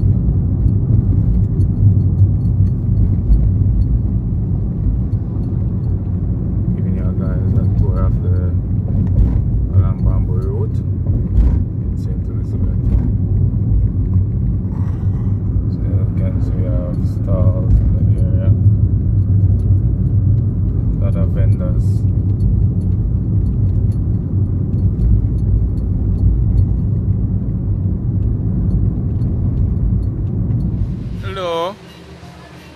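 Steady low rumble of a car's engine and tyres heard from inside the cabin while driving slowly along the road, with faint voices now and then.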